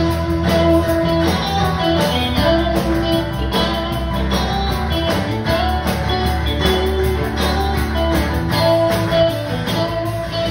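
Live country band playing an instrumental stretch: guitars carrying the melody over bass and a steady drum beat, with no vocals.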